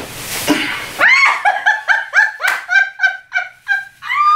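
A person breaking into a quick run of high-pitched laughs, about three or four short bursts a second, each dropping in pitch. The laughter is preceded in the first second by a brief rustling scuffle.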